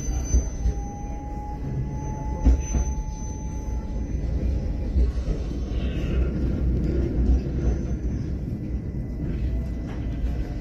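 Low, steady rumble of a moving vehicle heard from inside, with irregular knocks and a faint whine that rises slightly in pitch during the first few seconds.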